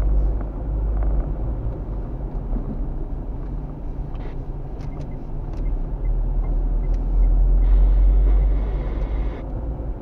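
Car driving, heard from inside the cabin: a steady low rumble of engine and road noise, growing louder for a couple of seconds near the end.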